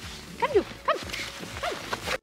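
A dog giving three short yelps.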